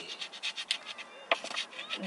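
Scratch-off lottery ticket being scraped with a coin: a quick run of short, irregular scratching strokes, with one sharper scrape a little past the middle.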